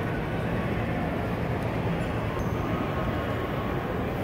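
Steady low background rumble and hum of room noise, with no distinct events.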